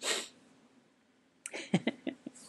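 A man's single short, breathy exhalation at the very start, the last of a brief coughing fit, then faint mouth clicks in the last half second.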